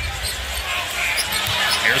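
A basketball being dribbled on a hardwood court, with scattered short bounces over a steady arena crowd murmur.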